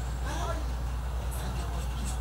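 A pause in speech: a steady low hum fills the room, with a faint voice about half a second in.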